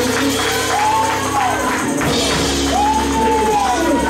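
Live gospel church music with a tambourine and singing over a steady low bass, the bass note changing about two seconds in.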